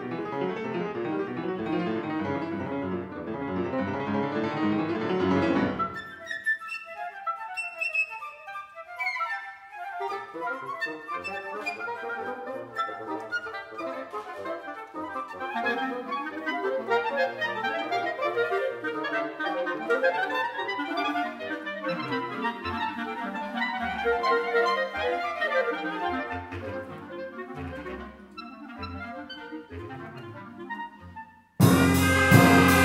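Concert wind band playing with an improvised piano part. A full, held band chord sounds for about the first six seconds and then drops away to a thin, sparse passage. From about ten seconds in, busy running lines from clarinets and piano take over.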